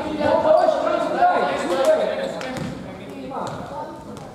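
A basketball bouncing on an indoor sports-hall floor, with players' voices calling out over it, loudest in the first couple of seconds, in a large echoing hall.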